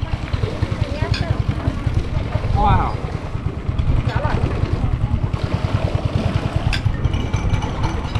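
Long-tail boat engine running at low speed, a steady, rapid low putter.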